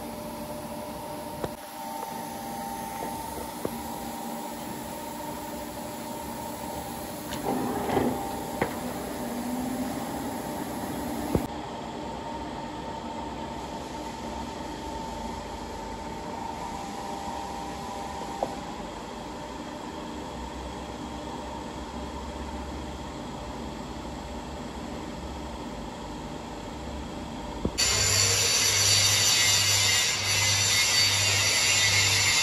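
Metal lathe running steadily, a low machine hum with a few sharp knocks of metal on metal. Near the end a louder rhythmic sound with a hiss takes over.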